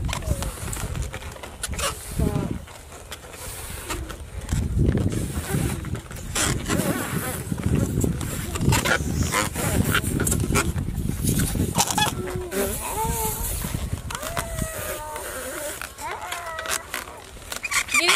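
A long modelling balloon being blown up by mouth: a run of breathy puffs through the middle of the stretch.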